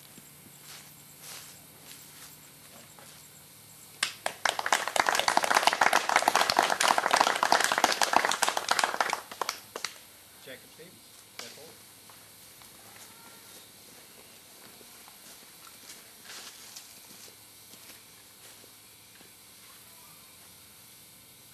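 A group of people applauding for about five seconds, starting about four seconds in and dying away.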